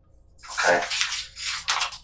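Speech: a voice saying "okay?", followed by a rough rushing hiss with rustling clicks on a noisy recording.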